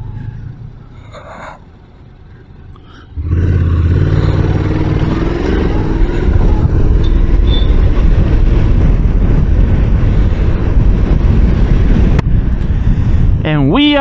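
Honda NC750X DCT's 745 cc parallel-twin engine pulling away: a low, quiet running note for the first three seconds, then it gets loud suddenly, its pitch climbs as the bike accelerates, and it settles into a steady drone at road speed mixed with wind rush on the microphone.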